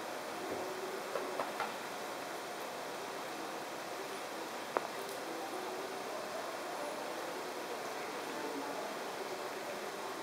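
Steady background hiss of an indoor hall, with a few faint clicks a little over a second in and one sharp click about halfway through.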